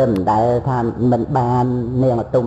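A man's voice intoning a Buddhist chant in Khmer sermon style, holding each syllable on a fairly level pitch with short breaks between.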